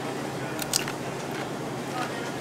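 A person biting into a crisp tortilla chip, with two or three sharp crunches under a second in, over a steady background hum.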